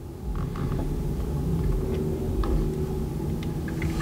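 Low steady rumble with a faint hum and a few light clicks.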